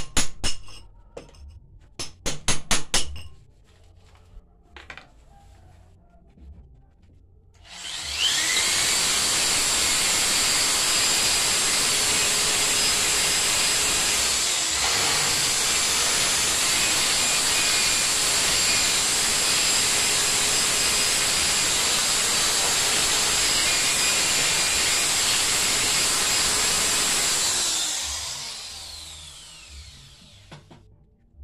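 A quick series of hammer blows on a chisel set into a hole in a concrete wall. About eight seconds in, a corded electric drill starts up with a rising whine and runs steadily in the hole in the concrete for about twenty seconds, then winds down with a falling whine near the end.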